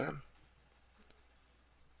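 Near silence: room tone, with one faint, short click about a second in.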